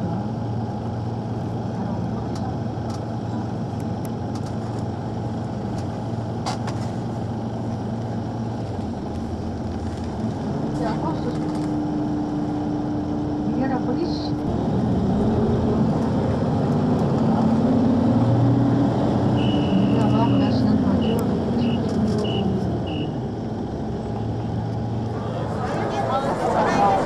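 Busy city street: crowd voices and road traffic, with a steady low engine hum. About three quarters of the way through comes a run of short high beeps.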